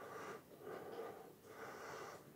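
Faint breathing close to the microphone: three soft breaths.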